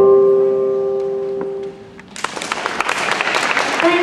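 Routine accompaniment music ending on a final held chord that fades away, then audience applause breaking out about two seconds in and building.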